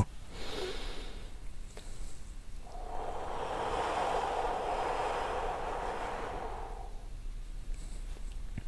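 A person breathing slowly: a brief breath about half a second in, then one long, even exhale lasting about four seconds. It is the drawn-out out-breath of tick-tock breathing, with a count of up to five held on the exhale.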